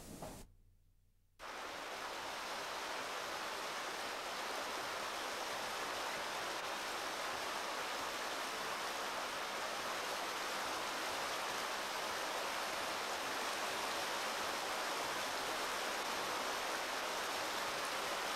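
About a second of dead silence, then the steady rush of river rapids pouring over rock, holding an even level throughout.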